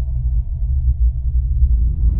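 Steady deep rumble of a cinematic sound-design drone, its sound sitting almost entirely in the low bass.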